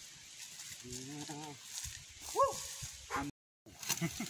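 A voice: a drawn-out call with a wavering pitch about a second in, then a short call that rises and falls about halfway through, over faint outdoor background. The sound cuts out completely for a moment near the end.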